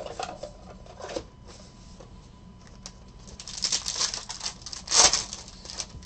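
Foil wrapper of a trading card pack crinkling as it is torn open and pulled off the cards, after a few light handling clicks. The rustle builds from past the middle and is loudest near the end.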